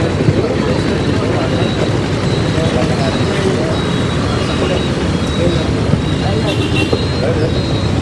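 Steady road traffic noise with indistinct voices in the background.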